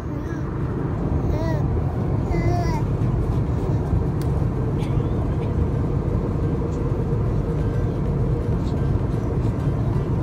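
Steady low airliner cabin noise, heard in the plane's lavatory, with a few brief high vocal sounds from the baby at about one and a half and two and a half seconds in.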